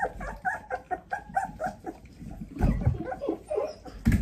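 Four-week-old Australian Labradoodle puppies whimpering and yipping in a quick run of short, high squeaks, about four or five a second, with a louder low bump about two and a half seconds in.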